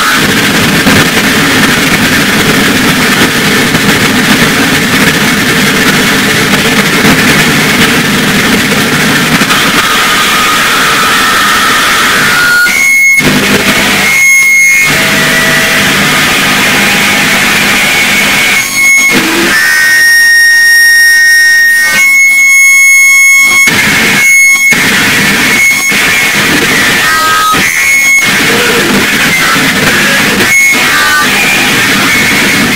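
Harsh noise music from live electronics: a dense wall of distorted noise at full loudness. From about halfway through, it is chopped by abrupt cuts and shot through with steady, high feedback tones.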